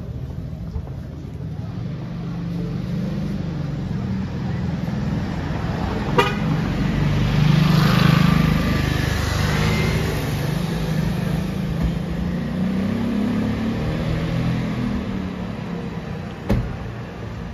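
City street traffic with low engine rumble throughout. A motor scooter passes close by about halfway through, the loudest moment. A sharp click about six seconds in.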